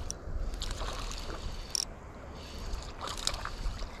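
Water splashing and sloshing as a small hooked bass thrashes near the surface while being reeled in.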